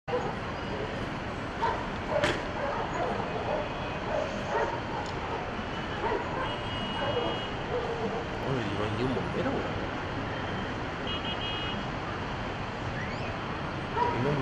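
Distant city ambience: a steady background hum with faint voices. There is a sharp knock about two seconds in, and a few short high tones.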